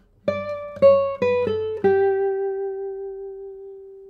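Daniele Marrabello 2023 No. 165 classical guitar (spruce top, Indian rosewood back and sides, carbon strings) played: five plucked single notes stepping down in pitch, the last one held and ringing on for about two seconds with a long, slow decay.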